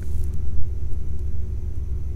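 A low, steady rumble with a faint hum.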